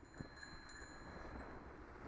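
Bicycle bell rung a few times in quick succession, a high ringing that fades within about a second and a half, over low wind and tyre noise.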